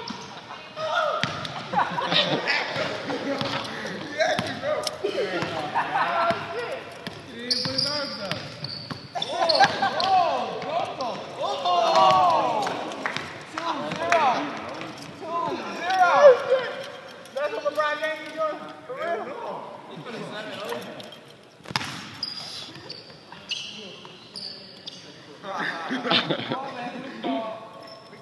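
A basketball bouncing on a hard court, repeatedly, amid people shouting and talking over each other.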